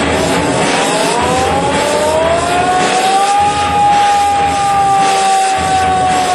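A loud engine running, its whine rising over the first three seconds or so, then holding and slowly sinking.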